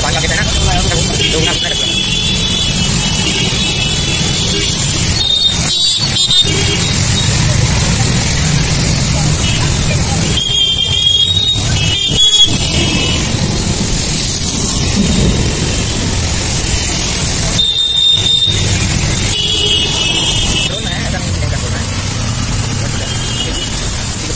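Steady rush of road and wind noise from a two-wheeler riding through rain-flooded city traffic, with a low engine hum underneath. A high tone sounds several times along the way.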